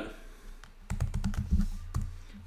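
Computer keyboard being typed on: a quick run of key clicks starting about halfway through.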